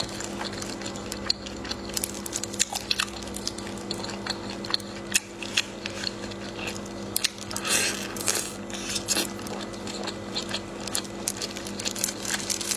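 Close-miked eating: wet biting and chewing of sauce-soaked food, with many short sharp mouth clicks and a longer hissy suck about eight seconds in. A steady low hum runs underneath.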